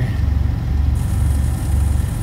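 Diesel engine of a semi truck idling, a steady, evenly pulsing low rumble heard from inside the cab.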